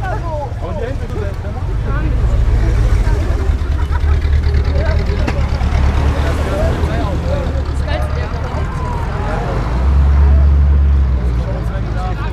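Deep, low engine rumble of American cars rolling slowly past, a C3 Corvette's V8 among them, swelling as they pass and swelling again briefly near the end. Crowd chatter carries over it.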